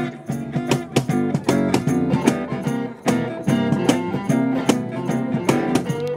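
Live acoustic blues band playing an instrumental passage: strummed acoustic guitars and bass over a steady cajón beat, with an electric guitar playing along.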